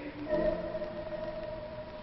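Background music under the drama: one sustained note, held for about a second and a half.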